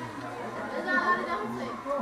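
Background chatter of several people talking at once.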